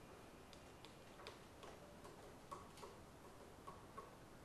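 Near silence: faint room hiss with about seven small, irregularly spaced clicks.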